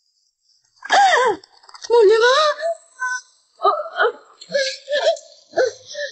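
A high-pitched voice crying out in short, broken bursts with wide swings of pitch, starting about a second in after a silence.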